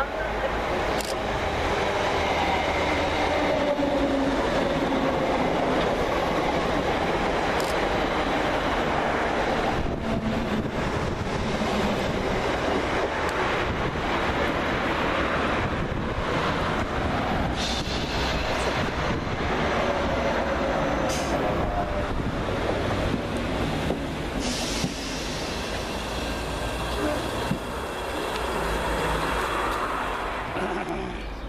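Three coupled Class 321 electric multiple units running into the platform and slowing to a stop. A whine falls in pitch over the first several seconds as the train slows, over steady running noise from the wheels and carriages.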